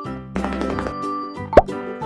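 Bouncy children's background music, with a cartoon plop sound effect about one and a half seconds in: a short, sharp drop in pitch, the loudest sound here.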